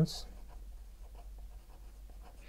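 A pen writing on paper: faint, irregular scratching strokes as letters are written.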